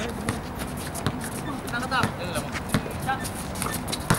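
Basketball game in play on an outdoor court: players' running footsteps and a basketball bouncing, heard as scattered short knocks, with brief shouts from players and onlookers around the middle.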